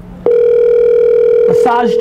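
A loud, steady electronic phone-line tone played through a smartphone's speaker during an outgoing call. It starts suddenly a quarter-second in, holds one pitch for about a second and a half, then a voice comes on the line.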